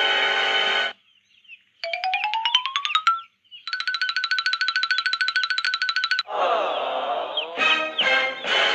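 Background music for the first second, then a string of cartoon sound effects. First a rapidly pulsing tone that rises in pitch for about a second, then a fast, steady trilling beep for about two and a half seconds, then a brief swirling effect before the music comes back.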